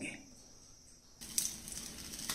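Near silence for about a second, then a faint sizzle of stuffed green chillies frying in mustard oil in a nonstick pan starts abruptly, with a light tick just after it begins.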